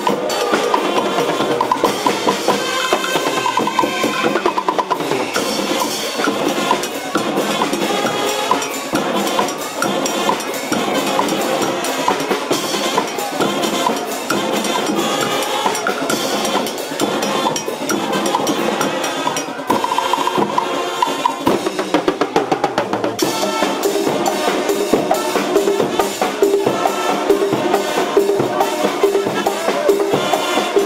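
Brazilian fanfarra marching band playing: brass horns carry the melody over a driving beat of bass drums and snare drums.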